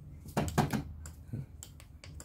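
A few light clicks and knocks of a hand handling plastic keyless alarm remote fobs on a tabletop, over a low steady hum.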